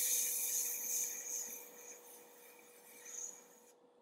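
Airbrush spraying paint: a steady hiss of air, loudest for the first second and a half, then softer as the trigger is eased. It cuts off abruptly shortly before the end.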